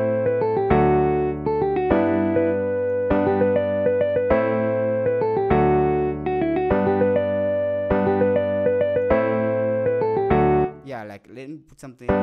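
A software keyboard instrument in FL Studio plays a melody over chords with an electric-piano-like tone, changing notes about every second. Near the end it drops out for about a second, leaving a faint swirling sweep, before the pattern starts again.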